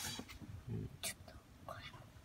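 Faint whispering or low murmuring voice, with a single sharp click about a second in.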